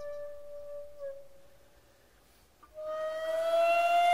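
Solo shakuhachi (Japanese end-blown bamboo flute) playing a long held note that fades away into a brief near-silent pause. A new breathy note then enters near the end and bends slowly upward in pitch.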